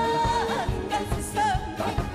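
Woman singing a trot song live into a handheld microphone, with vibrato on the held notes, over upbeat accompaniment with a steady beat.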